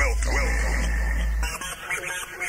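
Electronic rave DJ mix breaking down: the drum beat drops out under a voice sample with a sliding pitch and a held high synth tone over a sustained bass. The bass cuts off about three quarters of the way through and lighter, quieter sounds take over.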